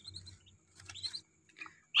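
Newly hatched Muscovy ducklings peeping: a few short, high, rising peeps, two right at the start and a small cluster about a second in.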